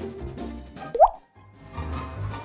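Background music with a single short comedic "bloop" sound effect about a second in, a quick upward glide in pitch. The music drops out briefly right after it and then comes back.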